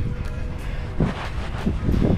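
Wind rumbling on the microphone over open water, with a faint steady tone in the first half and a short snatch of voice about a second in.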